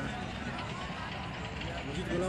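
Steady outdoor background noise with faint, distant voices; no single event stands out.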